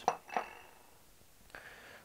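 Small ceramic bowls clinking together as one is set down: a couple of short knocks in the first half second, one leaving a brief light ring.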